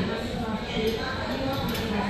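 Indistinct voices of people talking, with no clear words, over a steady background hum.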